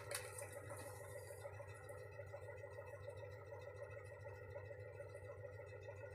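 Quiet room tone: a faint, steady hum with no distinct events.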